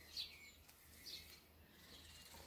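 Near silence: quiet room tone with a low hum and two faint, brief swishes, about a second apart, as needle and thread are drawn through fabric while a button is sewn on.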